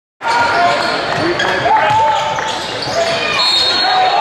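Live basketball game sound in a gym: a basketball bouncing on the hardwood floor and sneakers squeaking, with players' voices behind. The sound cuts in suddenly just after the start.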